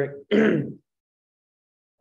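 A single short throat-clear right after a spoken word.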